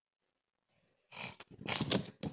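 Near silence, then about a second in a loud, breathy exhale close to a handheld microphone.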